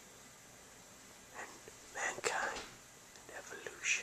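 A man whispering, in two short phrases: one about a second and a half in, another near the end.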